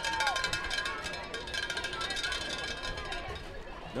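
Faint, distant shouting voices from the field and sideline, over several steady faint background tones.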